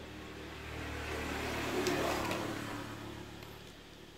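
A road vehicle passing by: its noise swells over about a second and a half, peaks, and fades away again.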